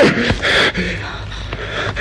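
A man gasping and breathing hard as he jolts awake from a nightmare, with a sharp breath about half a second in.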